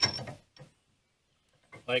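A brief metallic clink as a nut is fitted onto the threaded shank of a trailer hitch ball, followed by near silence.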